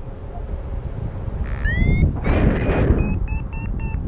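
Paragliding variometer beeping over wind noise on the microphone: a rising chirp about two seconds in, then a quick run of short, even beeps at about five a second near the end, the vario signalling climbing air in a thermal. A louder rush of wind comes just after the chirp.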